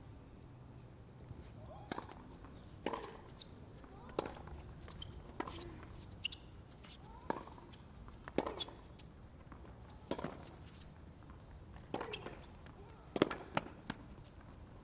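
Tennis ball struck back and forth by rackets in a long baseline rally: about ten crisp hits roughly one to two seconds apart, with the loudest pair near the end.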